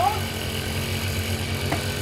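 Small motor scooter engine running with a steady low hum, and one brief click near the end.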